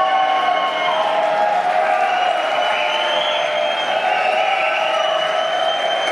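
Large concert audience cheering and whistling: a steady roar of crowd noise with long held yells and whistles over it.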